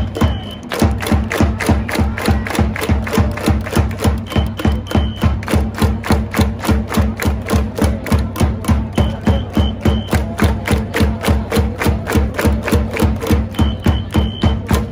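Japanese baseball cheering section playing a chance-time cheer: drums beating steadily about three times a second under a sustained melody and fans chanting, with a few short high tones over the top.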